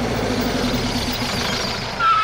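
Motor vehicle engine running steadily, played as a sound effect.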